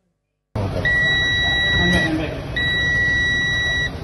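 Two long, steady electronic beeps, each a little over a second with a short gap between them, over a noisy background hubbub.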